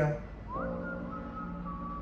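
Background music in a pause between words: a soft, whistle-like lead tone slides up about half a second in and then holds, over a sustained chord.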